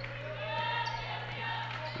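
Basketball being dribbled on a hardwood court, heard faintly under the arena's ambience. A distant voice calls out partway through, over a steady low hum.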